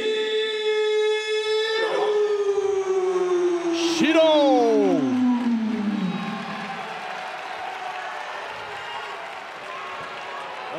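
A ring announcer calls a fighter's name in one long drawn-out shout, held steady and then sliding slowly down in pitch, with a second falling call about four seconds in. The crowd cheers and applauds through the second half.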